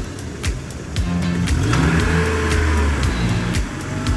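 A car arriving with its engine running and a smooth rise and fall in engine pitch mid-way, over background music with a steady beat.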